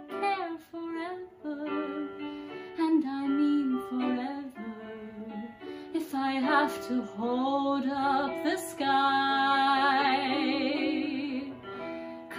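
A young woman singing solo over an instrumental accompaniment, moving through a melodic phrase. Near the end she holds one long note with vibrato.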